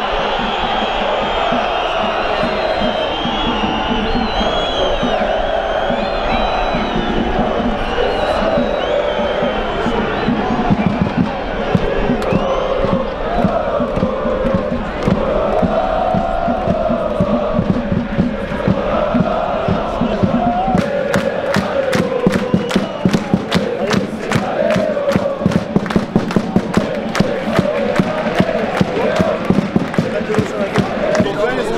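A section of football supporters singing a chant in unison, carried by a steady drum beat. About two-thirds of the way in, sharp rhythmic hits or claps join in, about two or three a second.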